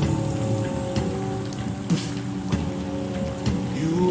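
Wordless layered vocal harmonies from a vocals-only nasheed, slowed down and heavy with reverb, held between sung lines over a steady hiss with a few soft clicks.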